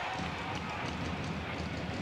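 Ice hockey arena sound during live play: a steady crowd hubbub with light skate and stick knocks from the ice.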